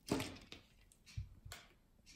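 Handling of a plastic sausage-snack wrapper as it is opened: a short rustle right at the start, then two light thumps a little over a second in.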